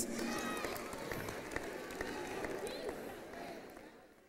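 Church congregation clapping and calling out in response to the preacher, fading away near the end.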